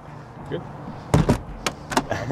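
A few knocks and thumps, loudest in a short cluster about a second in, then two sharper clicks: people climbing into a helicopter's cabin, knocking against its door and fittings.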